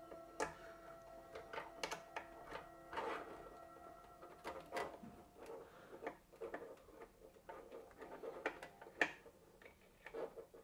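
Faint, irregular clicks and taps from hands undoing a screw and handling metal parts at a graphics card inside a PC case, with faint background music.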